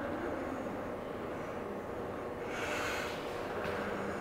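A person's breath, drawn close to the microphone, about two and a half seconds in and lasting about a second, over a steady low room rumble.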